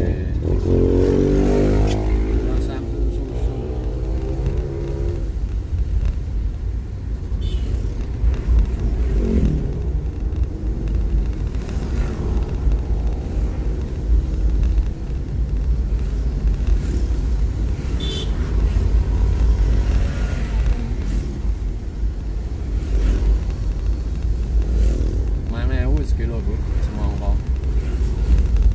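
Low, steady rumble of a car's engine and tyres heard from inside the cabin while driving. A person's voice comes and goes over it, most clearly in the first few seconds and near the end.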